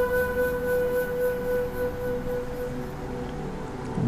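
Soft background music for relaxation: one long held note that fades away over the second half.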